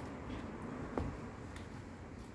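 Quiet handling of a small plastic pot holding a pelargonium cutting, with one light click about a second in and a fainter one soon after, over a faint steady background hum.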